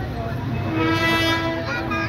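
A single steady horn note, one long honk of about a second starting about half a second in, over street crowd chatter.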